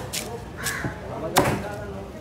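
Knife chopping into a tuna on a wet cutting board: a few sharp strikes, the loudest about one and a half seconds in.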